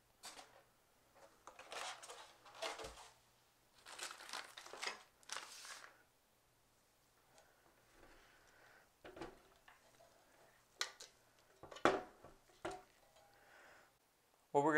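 Plastic packaging rustling and crinkling in irregular bursts while it is handled, then a few sharp clicks and knocks near the end.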